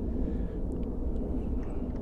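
Steady low outdoor background rumble, with a few faint light ticks.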